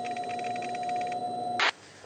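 Electronic title-card sound effect: a steady high beep held over buzzing static with fast ticking. The ticking drops away about halfway, and the beep cuts off with a short burst of noise near the end.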